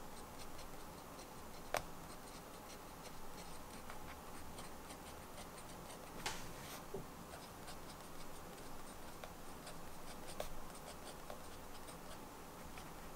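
Fountain pen nib scratching on paper in short, irregular strokes while handwriting, faint and close. Two sharper clicks stand out, one about two seconds in and one about six seconds in.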